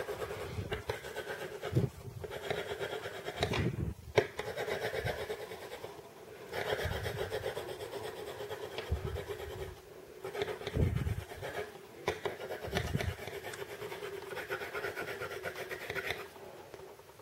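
Coloured pencil shading back and forth on paper: a continuous scratchy rubbing, with short breaks about six and ten seconds in.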